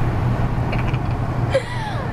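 Steady low rumble of a car's engine and road noise heard inside the cabin, with a short falling squeak near the end.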